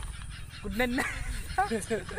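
Two short calls, the first rising in pitch, over the low steady rumble of an idling motorcycle engine.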